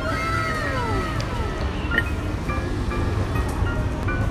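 Background music with steady held notes. A pitched tone glides downward over the first second and a half, and a low rumble runs underneath.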